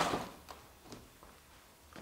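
A few faint, light clicks and taps, spaced about half a second apart, of small objects being moved and set down by hand.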